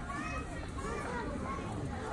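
Distant, unintelligible voices of people, children among them, chattering and calling over a low, steady outdoor rumble.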